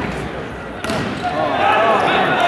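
A volleyball struck hard once, a sharp smack about a second in, in a large sports hall. Crowd voices rise after it.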